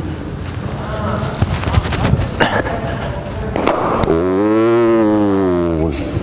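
A few sharp knocks as a cricket ball is bowled and played in an indoor net, then a man's long, drawn-out vocal cry of nearly two seconds, rising and then falling in pitch.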